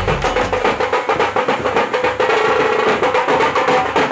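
Music with fast, even drumming over a held tone, the deep bass dropping out about a second in.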